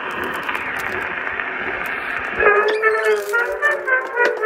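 A record playing on a record player: applause on the recording, then about two and a half seconds in a song starts with a clear pitched melody.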